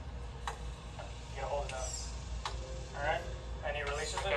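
Two sharp clicks about two seconds apart, with quiet voices in the room between them.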